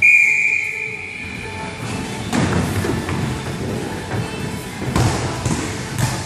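A referee's whistle blows one long, steady blast, the signal for kickoff. It is followed by a jumble of thuds and noise as the players in inflatable bubbles charge across the court.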